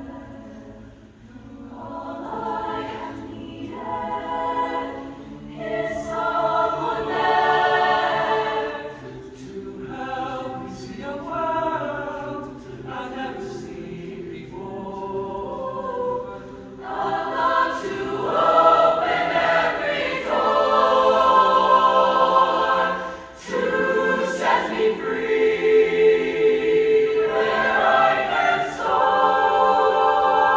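A mixed-voice show choir singing together, building louder about two-thirds of the way through, with a brief drop just before the loudest stretch.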